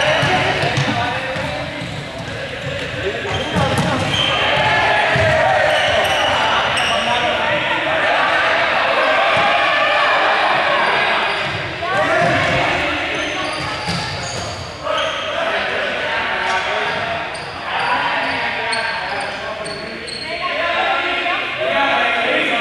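Many voices of a group talking and calling out, echoing in a large sports hall, over repeated footsteps thudding on the court floor as players run.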